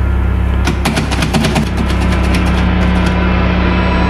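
Loud, steady low drone of a horror-film soundtrack. About a second in, a door handle gives a quick run of rattling clicks, and near the end a rising build of tension swells.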